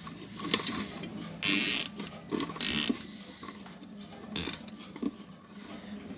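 Screwdriver work on a car stereo's metal chassis: scattered clicks and two short scraping bursts about a second and a half and nearly three seconds in, then another click a little after the middle.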